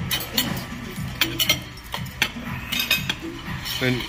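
Metal serving spoons and chopsticks clinking against ceramic plates and bowls as shared food is served, a scatter of short sharp clinks.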